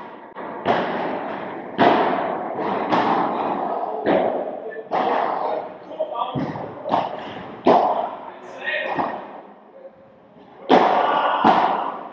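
A padel rally: about ten sharp hits of the ball off rackets, glass walls and court, roughly one a second with a short lull near the end, echoing in a large indoor hall.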